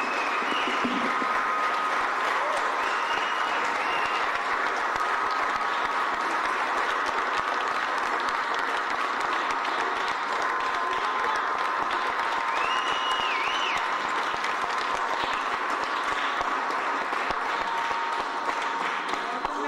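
Audience giving a standing ovation: dense, steady applause, with a few voices calling out over it.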